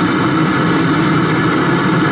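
Oil burner of a converted gas water heater running steadily, burning vegetable oil with the oil flow set to what is probably the right amount: an even, loud rumble with no breaks.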